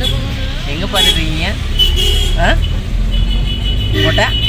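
Steady low engine and road rumble inside a slow-moving vehicle's cabin, with voices over it.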